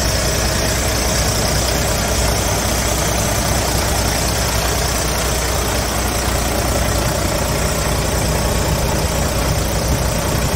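Volvo FH truck's inline-six diesel engine idling steadily, with an even low drone.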